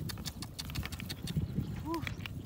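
Snail shells clicking and clattering against each other as a handful of snails is turned over in cupped hands: a loose run of quick clicks over a low rumble.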